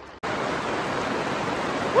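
Hail striking the plastic film of a greenhouse hoop house, a dense, steady rattling hiss of countless small impacts that starts suddenly a moment in.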